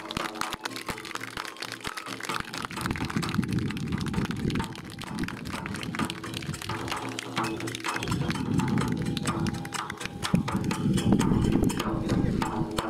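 Audience applauding, a dense irregular patter of claps over a low murmur of the crowd, just after the kagura drum and flute music has stopped.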